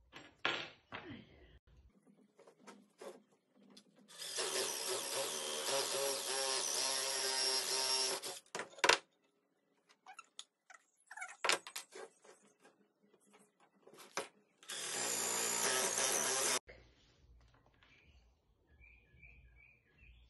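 Cordless drill boring holes in a wooden board. It runs steadily for about four seconds, then there is a sharp knock, then a second shorter run of about two seconds, with scattered clicks and knocks of handling between them.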